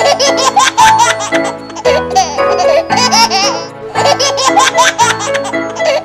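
Upbeat children's song with a regular beat, with a baby laughing and giggling over it.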